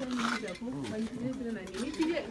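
A few clinks of cutlery and dishes against a plate, with people talking in the background.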